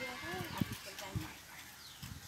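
People's voices talking in the background, with short high falling chirps of a bird and two low thumps, about half a second and a second in.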